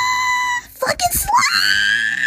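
Two long, high-pitched screams from a voice: the first held on one pitch and stopping about half a second in, the second rising and then held high from about one and a half seconds in.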